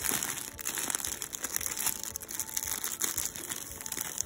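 Clear plastic bags crinkling and rustling as packaged T-shirts are handled and shuffled, a continuous crackle throughout.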